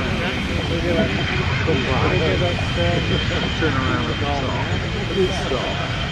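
English Electric Lightning's twin Rolls-Royce Avon turbojets running as the jet taxis: a steady high whine over a low rumble, with people talking over it.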